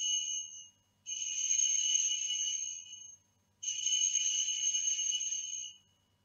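Altar bells (sanctus bells) rung in peals: one already ringing that stops within the first second, then two more peals of about two seconds each, with a short gap between them. The ringing marks the elevation of the chalice at the consecration.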